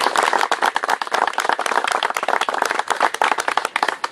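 An audience applauding: many people clapping together after a speech, stopping near the end.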